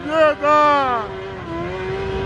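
High-revving engines blipped on the throttle during a burnout: a quick rev just after the start, then a longer rev whose pitch falls away as the throttle closes, over a steady engine note held at high revs.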